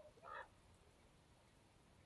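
Near silence, broken once shortly after the start by a single short, faint animal call.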